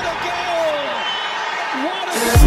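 Television sports commentator's excited, drawn-out calling over the steady noise of a stadium crowd.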